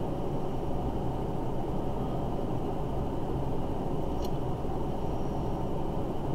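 Steady low rumble of background noise, even throughout, with one faint click about four seconds in.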